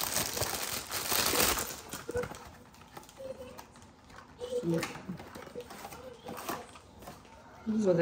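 Thin clear plastic bag crinkling as a boxed item is pulled out of it, loud for about the first two seconds, then giving way to quieter handling rustles and small clicks.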